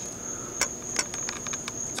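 A steady high-pitched whine with a few light clicks in the middle.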